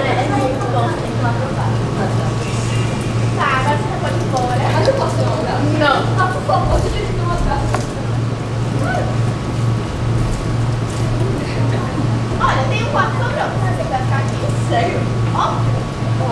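Actors' voices speaking on a stage, distant and indistinct, over a steady low hum.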